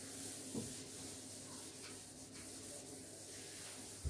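A board duster rubbing back and forth across a whiteboard, wiping off blue marker writing, as a steady scrubbing hiss.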